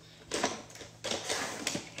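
Hands rummaging through a box of makeup, the items clattering and clicking against each other in two bursts, while searching for a spoolie.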